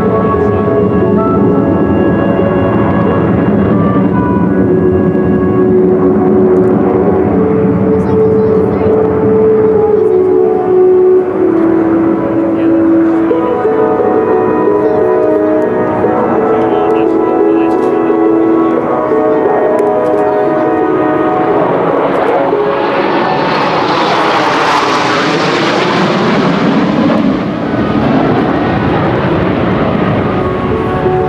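A formation of F-16 fighter jets passes overhead. Their jet noise swells about three-quarters of the way through and falls away, sweeping down in pitch as they go by. Music plays over the loudspeakers throughout.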